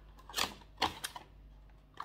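Two short, light clicks a little under half a second apart, then a fainter tick: cardboard and plastic packaging being handled while a beauty advent calendar door is opened.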